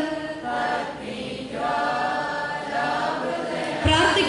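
Voices singing a slow song in long held notes, quieter than the speaking around it. A short low thump just before the end.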